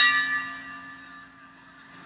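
The round bell ringing out after being struck, its tone fading away over about a second and a half; it signals the start of the second round.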